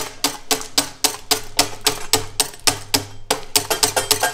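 Rapid hand-chopping of hard candy rope into pieces with a scraper blade against the steel work table: sharp knocks about four a second, quickening near the end.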